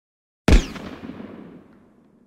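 Intro sound effect for an animated logo: one sudden, loud hit about half a second in, with a deep low end, fading away over about a second and a half.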